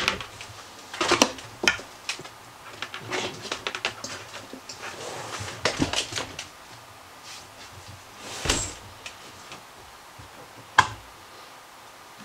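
Portable 12 V fridge/freezer's plastic case bumping and scraping as it is pushed and settled into a dinette booth: a run of knocks and rubbing sounds, a longer scrape later on, and one sharp click near the end.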